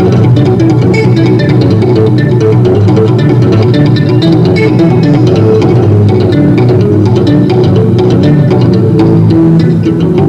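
Electric guitar played solo through a small combo amplifier: a fast, continuous run of notes.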